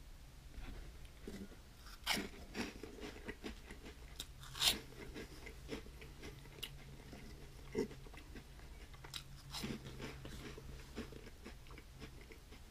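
A person chewing a mouthful of Flamin' Hot Cheetos Puffs, puffed corn snacks, with irregular crunches, the loudest about two and four and a half seconds in.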